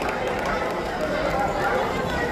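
Indistinct voices and background chatter of people in a hall, with no single clear speaker.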